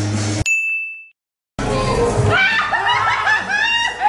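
Background music cuts off with a single bright ding that rings out briefly, then a moment of dead silence, then a burst of loud, excited voices and laughter as people are startled by a prank scare.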